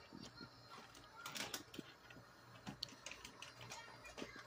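Faint, irregular clicks and taps, a cluster of them a little over a second in.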